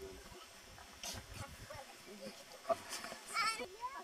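Indistinct voices of people talking and calling, with a sharp click about two and a half seconds in and a louder high-pitched vocal call near the end.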